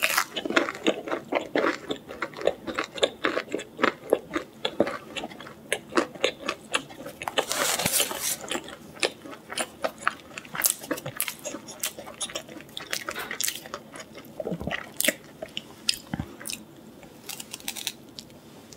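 Close-miked biting and chewing of a crisp breaded fried chicken strip: a steady run of sharp crunches and wet mouth clicks, with a denser stretch of crunching about eight seconds in.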